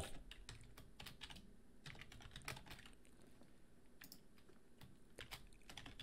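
Faint computer keyboard typing: single key clicks in irregular runs with short pauses.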